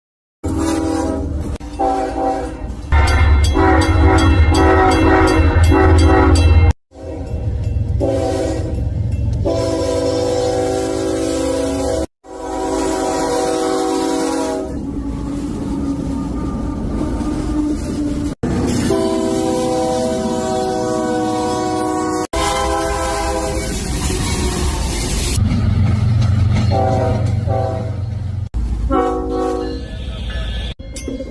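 Diesel freight locomotives passing close by, sounding their multi-chime air horns in long and short blasts over the rumble of their engines and rolling freight cars. The sound comes as a series of short spliced clips that cut off abruptly every few seconds.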